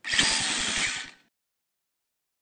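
Sound effect for the closing logo animation: a dense, noisy burst with a fast low pulse of about a dozen beats a second, lasting just over a second and then cutting off sharply.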